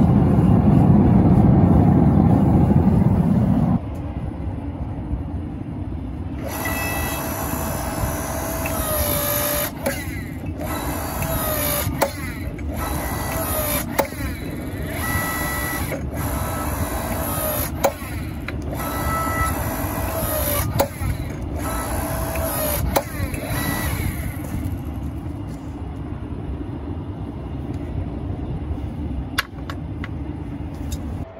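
A propane forge burner running loudly for the first few seconds. Then the electric hydraulic pump motor of a log splitter converted into a forging press runs with a steady whine, in several stretches broken by short stops, as the ram squeezes a hot steel bar between the dies. It falls quiet about 24 seconds in.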